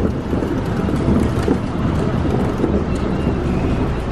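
Wind buffeting the camera microphone: a steady, choppy low rumble.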